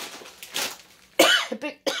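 A woman coughing: a sudden harsh cough a little over a second in, trailing off into shorter throaty bursts.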